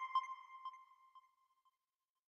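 Tail of an electronic chime sound effect marking an on-screen caption: a bell-like ping repeating as quickly fading echoes, dying away before the end.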